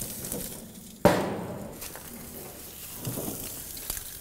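Metal lid of a gas grill lowered shut with one sharp clank about a second in, ringing and fading over about a second.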